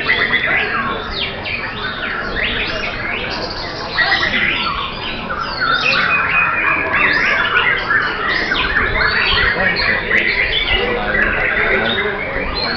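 White-rumped shama (murai batu) song: loud, varied phrases and harsh calls, densely overlapping and without a break.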